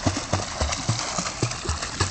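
Water splashing from a swimmer's kicking feet as he dives head-first under the pool surface. The splashes come in a quick, regular series of about four a second.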